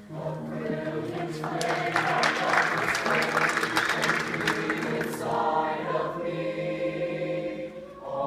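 Show choir singing sustained chords in harmony. From about a second in to about five seconds in, a loud burst of noise full of sharp clicks lies over the singing.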